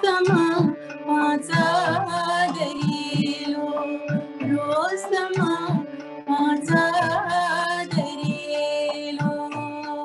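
A woman singing an Indian light-music song with ornamented phrases, accompanied by tabla and a steady drone. The sung phrases stop about eight seconds in and the tabla and drone play on.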